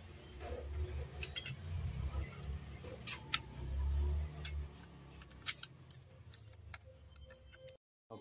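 Scattered light clicks and taps of a set-top box's plastic front panel being handled and fitted onto its metal chassis, over a low rumble that swells about four seconds in. The sound cuts off just before the end.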